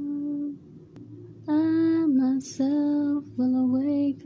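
A woman singing a psalm slowly and unaccompanied. A held note ends about half a second in, and after a short pause she sings a run of notes that step down in pitch, with brief breaks between them.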